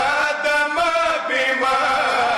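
Male voices chanting a noha, a Shia mourning elegy, in a slow, unaccompanied melodic recitation with long held, wavering notes.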